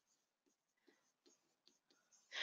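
Near silence: room tone with a few very faint taps of a stylus writing.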